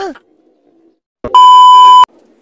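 A loud, steady, single-pitch electronic bleep dubbed onto the soundtrack. It starts abruptly a little past halfway and cuts off sharply. It is the same tone that plays with TV colour bars.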